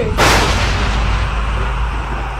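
A sudden loud boom about a quarter-second in, its crackle fading over about a second while a deep rumble carries on: a dramatic boom sound effect, the spirits' answer to the insult.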